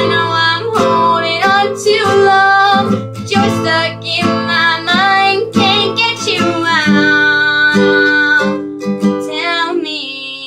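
A young woman singing with a strummed acoustic guitar fretted with a capo, the strums coming in a steady rhythm under the sung line.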